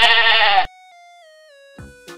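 A goat bleating once, a loud trembling call that cuts off about half a second in. Then a few soft electronic notes step down in pitch, and a plucky backing tune comes back in near the end.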